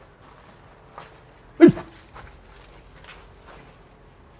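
Faint, scattered footsteps, with one short call that falls in pitch about a second and a half in.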